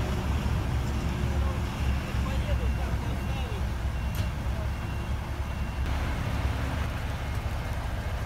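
Diesel engine of a Terex TR 60 rigid dump truck running with a steady low rumble as the truck starts to pull away.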